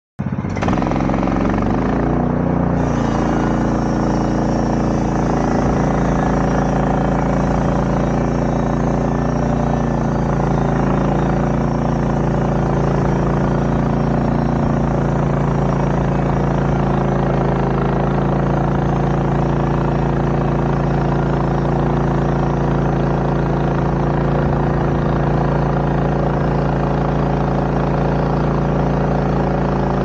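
An engine running steadily at one constant speed, a low hum that holds the same pitch and level throughout.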